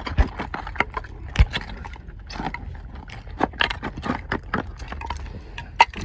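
Digging in a bottle privy pit: irregular scrapes, clicks and knocks as dirt is worked loose around buried bottles and crockery.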